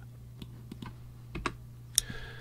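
Computer keyboard keystrokes: about half a dozen separate sharp clicks spread over two seconds, over a steady low electrical hum.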